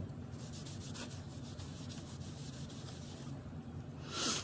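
Cotton pad rubbing over a metal nail stamping plate to wipe it clean, a fast run of light scrubbing strokes that stops shortly before the end.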